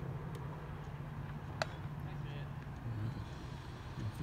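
Steady low hum of a motor vehicle, with distant voices and one sharp crack about one and a half seconds in.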